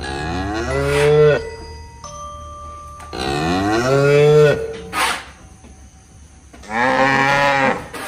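Cow mooing three times, each call lasting about a second and a half and rising then falling in pitch, with a short knock about five seconds in.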